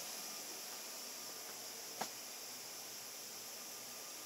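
Steady hiss of equipment cooling fans and air in a server room, with one faint click about halfway through.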